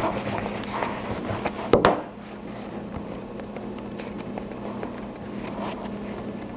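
Plastic roller rolled over gum paste on a foam roller pad, pressing it into a cutter, with a short knock about two seconds in. Faint rubbing of fingertips on the paste follows, over a steady low hum.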